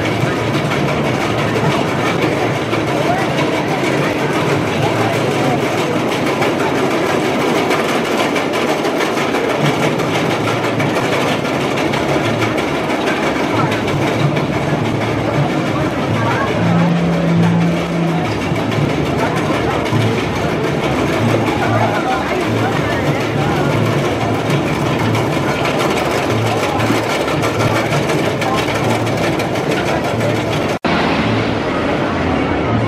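GCI wooden roller coaster train running along its track in a continuous rumble that pulses from about a third of the way in, over a background of park-goers' voices.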